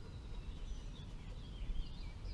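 Outdoor ambience: faint birds chirping and warbling in the distance over a low, steady rumble of wind on the microphone.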